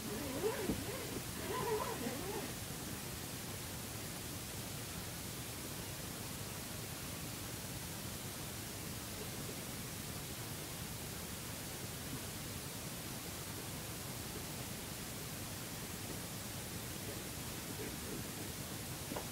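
Steady, even hiss of room and recording noise. In the first two seconds or so comes a short wavering pitched sound.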